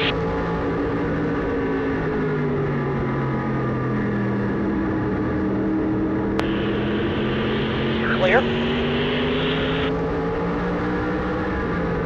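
Modified race car's engine heard from inside the cockpit, running steadily under the driver. Its note sags over the first few seconds, then climbs again as the car accelerates. Midway a crackly two-way radio burst opens with a click and carries the spotter's "Clear".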